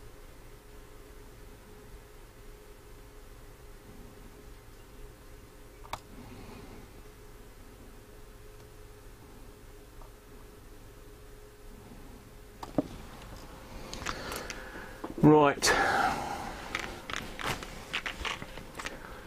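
Quiet room tone with a faint steady hum for most of the span. A click comes about thirteen seconds in, then rustling handling noise and a brief wordless voice sound near the end.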